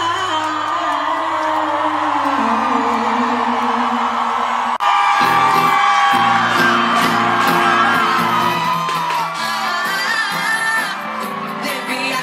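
Live pop music with a woman singing into a microphone over a band, played through a stage sound system. About five seconds in, the sound cuts off abruptly and a different stretch of the music comes in.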